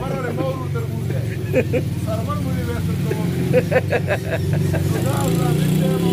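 An engine running steadily with a low, pulsing hum, a little louder near the end, under a man's talk.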